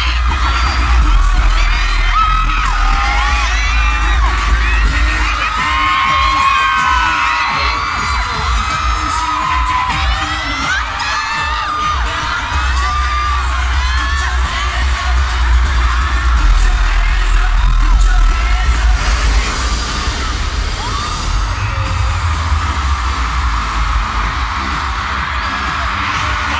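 Loud pop music through an arena sound system with heavy bass, under many overlapping high-pitched screams and cheers from fans close to the phone's microphone. The screaming is densest in the first half and thins out later.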